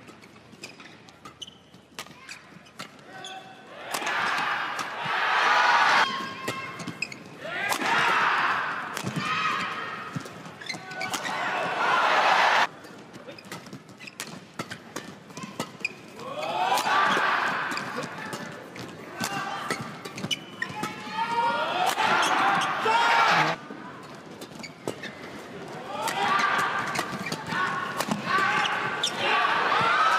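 Badminton rally sounds: sharp racket strikes on the shuttlecock and shoe squeaks on the court, with loud spectator crowd noise swelling up several times and cutting off.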